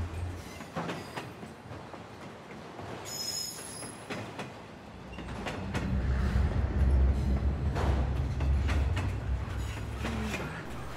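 Train rumbling low, building up about halfway through, with a brief thin high squeal a few seconds in.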